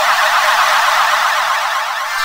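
Cartoon magic-spell sound effect conjuring something out of thin air: a loud, dense warble of many tones sweeping quickly up and down, like a siren, which turns into a twinkling shimmer at the very end.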